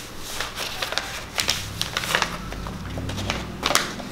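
Sheets of paper being folded and creased by hand: a series of crisp rustles and sharp creasing snaps.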